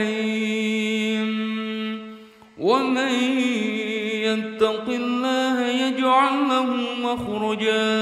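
A single voice chanting Quranic Arabic in a melodic recitation style, holding long, ornamented notes; it breaks off briefly about two seconds in for a breath, then starts a new phrase.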